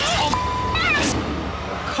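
Women shouting and shrieking in a heated fight, with one word covered by a short, steady censor bleep about a third of a second in, over background music. A high, rising-and-falling shriek follows about a second in.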